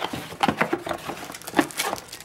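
Cardboard and plastic packaging handled inside a laptop box: a quick run of small rustles, scrapes and clicks as an accessory insert and a blister-packed strap are pulled out.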